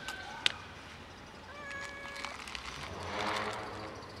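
A long-haired cat meowing, with a louder meow about three seconds in. There is a sharp plastic click about half a second in.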